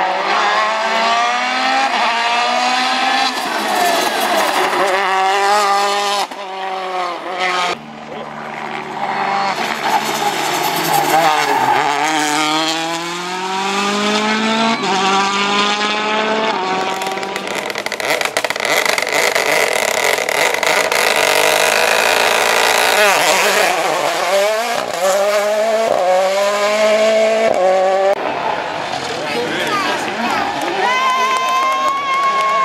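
Citroën DS3 WRC rally cars at full attack: the engine's revs climb hard through each gear, drop on the lift and downshift into corners, and pick up again, over several passes with abrupt changes between them.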